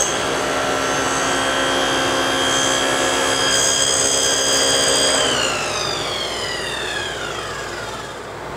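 SawStop table saw with a dado stack running at full speed through a test cut in a piece of ash. About five seconds in it is switched off, and its whine falls steadily in pitch as the blades coast down.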